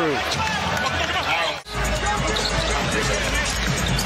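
NBA arena game sound: crowd noise and a basketball bouncing on the hardwood court. The sound cuts out sharply for an instant about one and a half seconds in.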